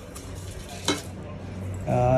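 Felt-tip sketch pen scratching across paper as an equation is written, with one short click about halfway through.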